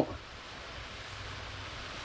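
Steady, even hiss of a food steamer steaming fish fillets.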